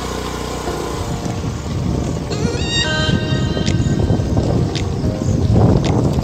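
Motorcycle riding over a rough gravel track: engine and road rumble with wind on the microphone, getting louder near the end. Music plays along with it.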